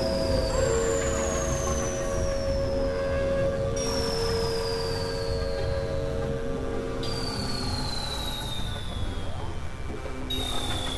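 Experimental electronic synthesizer drone music: steady held tones over a dense, rumbling noise bed, with a high whistling tone that glides slowly downward and restarts about every three seconds.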